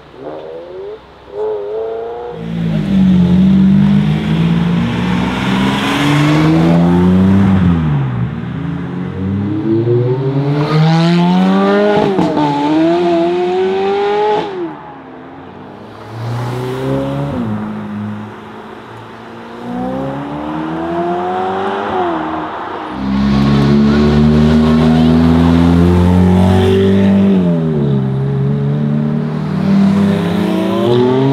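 Several Ferrari mid-engined V8 sports cars, among them a 360 and F430s, accelerating hard one after another. Each engine note climbs steeply and drops back at every upshift before climbing again.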